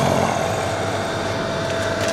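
Steady background rumble and hiss with a thin, constant mid-high tone running through it, and no distinct clicks or knocks.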